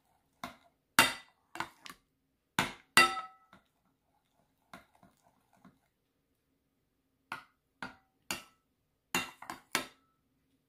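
A metal spoon clinking against a ceramic bowl, about fifteen irregular strikes, some with a short ring, as lumps of cream are crushed and stirred into condensed milk. The strikes thin out for a couple of seconds midway.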